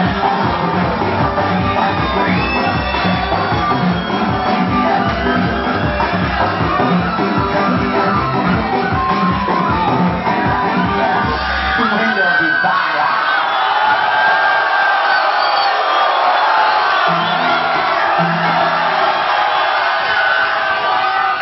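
Loud dance music over a concert sound system with a heavy, regular bass beat that cuts out about twelve seconds in, leaving a large crowd shouting and cheering.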